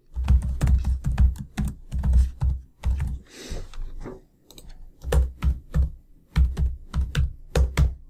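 Computer keyboard typing in quick runs of keystrokes, in three bursts with short pauses between them, each key press landing with a dull thud.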